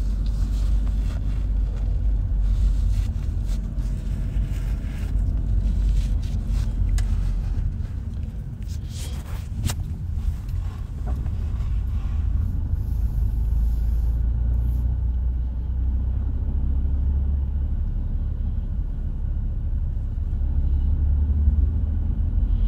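Car driving slowly, heard from inside the cabin: a steady low engine and road rumble, with a few light clicks about nine seconds in.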